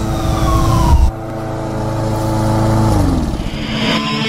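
Engine-like transition sound effect: a falling tone in the first second, then a steady pitched drone that drops in pitch about three seconds in.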